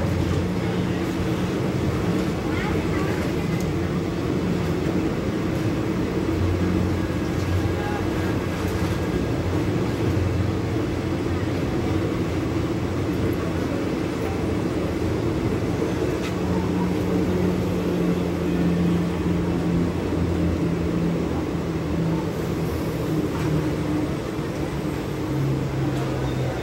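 Steady rumble of Indian Railways passenger coaches rolling past close by on the next track, wheels running on the rails, with a low steady hum underneath.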